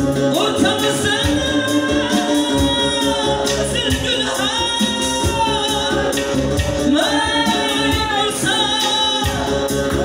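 A man singing live into a microphone, amplified, over electronic keyboard accompaniment. He holds long notes that waver in pitch, over a steady held keyboard chord.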